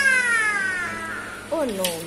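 A young child's voice: one long, high vocal sound gliding downward in pitch, then a short 'no' near the end.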